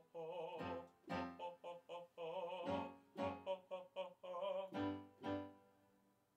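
A man singing a vocal warm-up exercise, a run of short sung vowel notes with vibrato, over piano chords played on a Yamaha Motif XS8 keyboard; the last chord fades out near the end.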